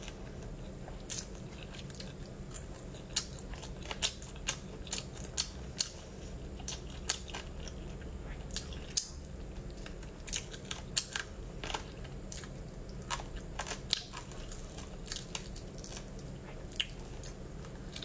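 A person chewing and biting roast chicken close to the microphone, with irregular crisp clicks from the mouth and the meat, a few a second, over a steady low hum.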